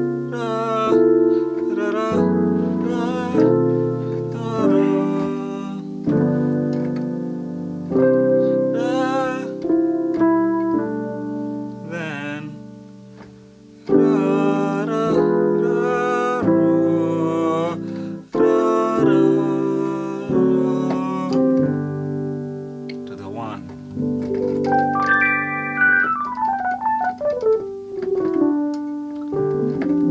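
Electric piano voice on a digital keyboard playing slow, sustained gospel-style chords that change every second or two, including augmented and diminished colour chords. Near the end, a run of notes falls quickly from high to low and resolves onto a chord.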